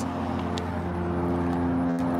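A motor vehicle's engine running steadily, giving an even, low hum.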